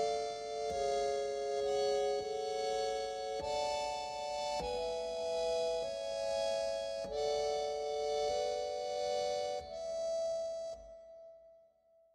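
Harmonium track playing back on its own, holding sustained three-note chords that change about every second or two, then fading out near the end.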